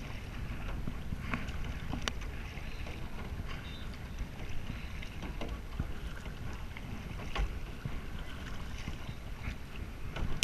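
Kayak paddle strokes splashing and water dripping off the double-bladed paddle, over a steady wind rumble on the microphone, with a couple of sharp clicks about two seconds in and near seven and a half seconds.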